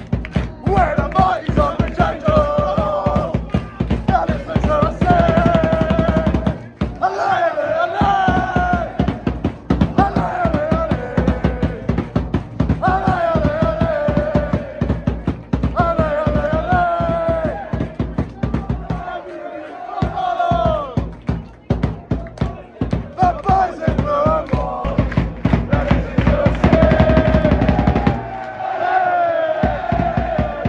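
Football supporters in a packed stand singing a chant together, loud, with a steady beat running under the singing.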